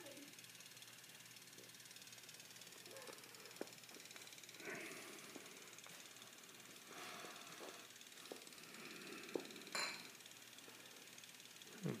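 Quiet room tone with faint hiss and a few soft, scattered clicks.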